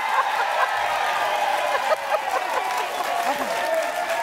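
Studio audience giving a standing ovation: steady applause with shouted cheers and whoops on top.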